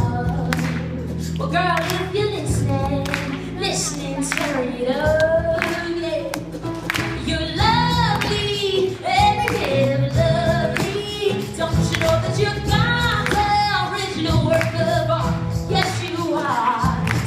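Live pop band performing: a female lead singer over electric bass and steady percussion beats.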